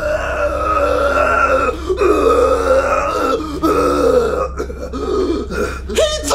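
A man's voice making long, drawn-out vomiting and retching noises, in three long heaves broken by short pauses.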